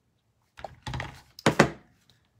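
Handling knocks of hard craft pieces on a tabletop, ending in a sharp, loud thunk about a second and a half in as something is set down.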